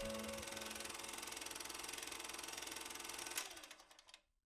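Faint, fast, even mechanical rattle over a lingering held tone, ending with a sharp click about three and a half seconds in before cutting off.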